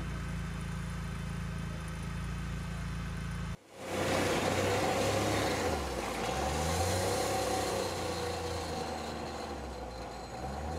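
Steady low hum of an unmanned ground vehicle's engine idling. About three and a half seconds in, this cuts to an open-frame utility vehicle driving off on gravel, its engine revving up and down over tyre noise, and fading toward the end.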